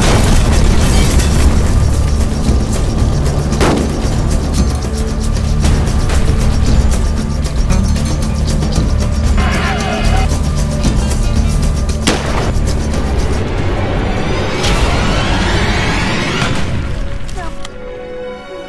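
Battle sound design under loud trailer music: a dense run of gunshots and booms over a steady low rumble, with a few heavier blasts that ring on. It drops away at the end.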